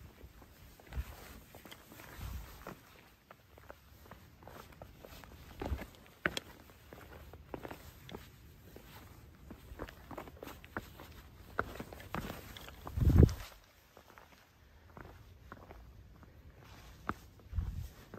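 Hiking shoes stepping and scuffing across rock boulders: irregular footfalls and short scrapes, with one heavier thud partway through.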